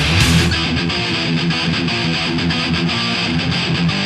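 Live thrash metal: the full band sounds for about half a second, then an electric guitar plays a fast, evenly picked riff nearly alone, loud and distorted.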